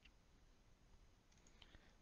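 Near silence: room tone with a few faint clicks, one at the start and a small cluster shortly before the end.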